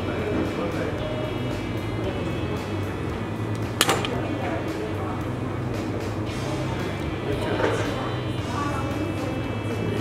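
Background music and a faint voice over a steady low hum. About four seconds in there is a single sharp snip as the wire's tag end is cut off close to the knot.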